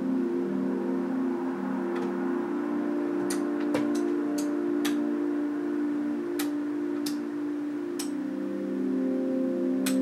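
Ambient drone music of sustained low tones, with about ten sharp clicks scattered at irregular intervals through the middle and near the end.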